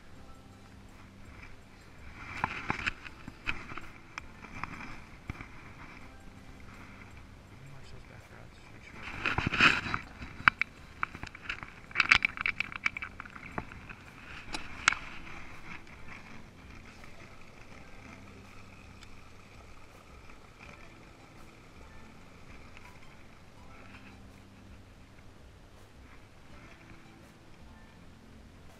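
Knocks, clicks and rustling from people moving about on a bass boat deck, loudest in a cluster of sharp knocks through the middle, with low, unclear voices. A faint steady whine follows in the quieter second half.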